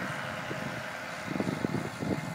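Wind buffeting a phone's microphone in irregular gusts over a steady outdoor hiss.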